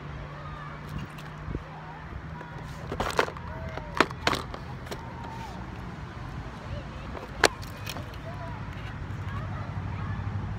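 Sharp knocks and slaps while a just-caught bluegill is handled on the line over a plastic tackle box: a cluster of them about three to four and a half seconds in, and a single loud one at about seven and a half seconds. A steady low hum runs underneath.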